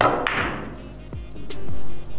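A billiard cue tip strikes the cue ball with a sharp click, and about a quarter second later the carom balls clack together, with the rolling sound fading over the next half second. Background music with a steady beat plays throughout.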